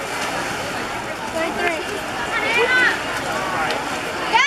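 Spectators shouting and cheering on swimmers during a race, with single voices calling out about a third of the way in and again around the middle to late part, over a steady wash of crowd noise.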